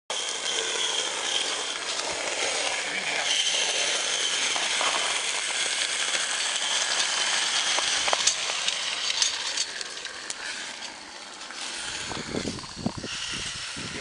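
Live-steam garden-railway locomotive hissing steam: a steady, loud hiss with scattered small clicks, easing off near the end.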